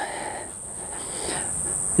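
Insects trilling steadily in a single high, unbroken pitch, over a faint outdoor background hiss.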